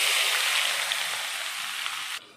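Chopped shallots dropped into hot oil in a pan, frying with a loud, steady sizzle that slowly eases off.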